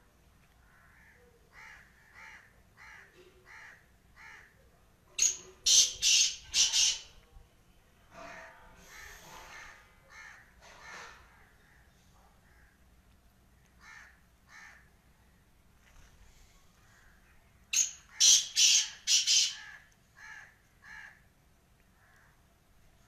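Black francolin calling: two loud, harsh phrases of four or five grating notes each, about twelve seconds apart, with softer single notes in between.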